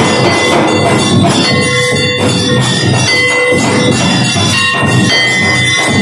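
Brass temple bell rung continuously by hand, its ringing tone held under dense, steady percussion during an aarti.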